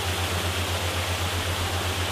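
Steady rushing-water background noise, like a stream or waterfall, over a low hum that pulses about ten times a second.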